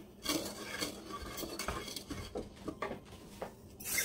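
Wooden spoon stirring milk in an enamel saucepan, with soft scraping and a few light knocks of the spoon against the pot.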